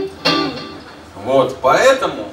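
A guitar chord is struck once just after the start and rings for about half a second, between bits of a man talking into the microphone.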